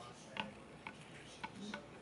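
Egg and butter cooking in a frying pan, with a few faint, irregular pops over a light sizzle.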